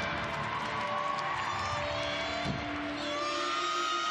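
Gymnastics arena ambience: a crowd murmuring and cheering, with a few rising whoops about three seconds in, over music playing through the hall.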